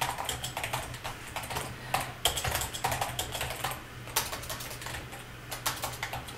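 Typing on a computer keyboard: key clicks in uneven runs with short pauses, as a sentence is typed.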